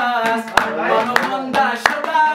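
A man singing a Hazaragi song, his voice sliding between held notes, with three sharp hand claps keeping the beat about two-thirds of a second apart.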